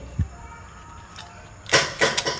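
Crisp pappadam being bitten and crunched, a sudden burst of crunching near the end that breaks into a few quick crackles.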